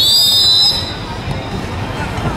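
Referee's whistle blown once, a shrill blast of about three-quarters of a second, signalling the kickoff, followed by background crowd noise.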